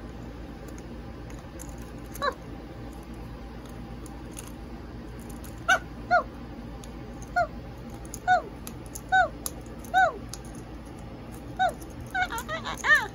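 A macaw giving short, honking calls that each drop in pitch: one about two seconds in, then seven more in the second half at roughly one a second.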